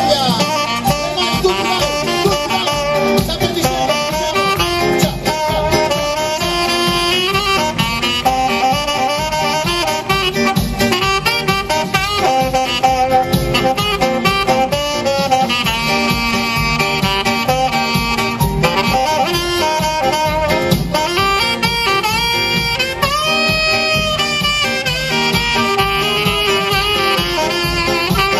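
A saxophone plays a melodic solo over a steady backing beat, holding one long note near the end.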